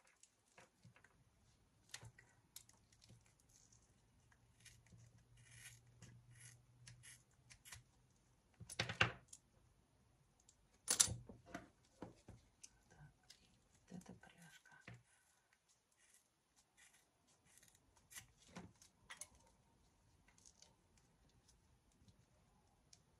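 Small scissors snipping and picking at a leather handbag strap, with scattered light clicks of its metal fittings; two louder cuts or tears come a couple of seconds apart near the middle.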